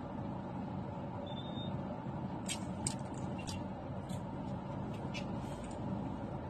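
Steady low rumble of traffic and a car's engine heard from inside the car's cabin. Several short, sharp ticks and hisses come in the middle stretch.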